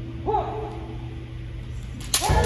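A kendo fencer's kiai: a short shout about a quarter second in that rises and falls in pitch, over a steady low hum in the hall.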